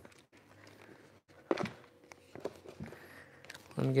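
Faint rustling and handling of a vinyl-covered fridge panel as it is lifted and turned over on a workbench, with one sharp knock about a second and a half in and a few light ticks after.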